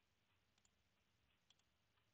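Near silence, with a few faint computer-mouse clicks, one of them about one and a half seconds in.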